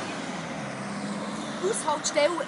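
A motor vehicle's engine running steadily amid street noise, with a faint steady hum; a voice starts near the end.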